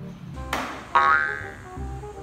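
A cartoon sound effect, a springy boing that comes in suddenly about a second in and slides down in pitch, over background music.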